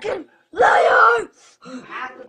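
A girl's loud, drawn-out wail lasting under a second, its pitch dropping at the end, with a short vocal burst just before it.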